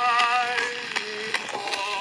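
1910 acoustic-era recording of a male vocal quartet singing in close harmony, with vibrato on the held notes. Irregular clicks of record surface noise run through it.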